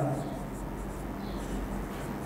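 Marker pen writing on a whiteboard: faint strokes as a sentence is written out word by word.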